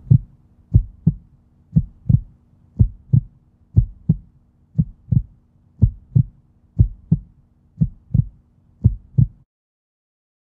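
A heartbeat: paired low thumps, lub-dub, about once a second over a faint steady hum, about ten beats, stopping short near the end.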